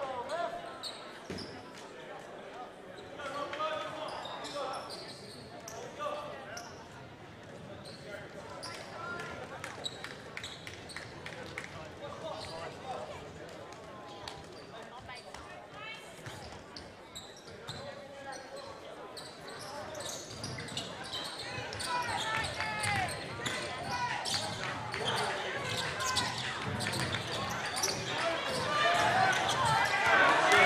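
Indoor basketball gym ambience: spectators' chatter with a basketball bouncing on the hardwood court. It grows louder over the last third as play resumes.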